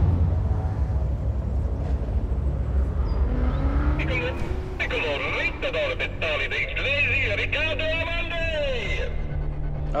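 Background music with a deep low drone that starts abruptly, joined about five seconds in by wavering, sliding tones higher up.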